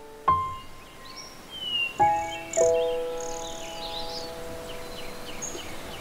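Background music score: a single soft note about a quarter second in, then held chord notes from about two seconds in, sustaining to the end. Birds chirp faintly over it.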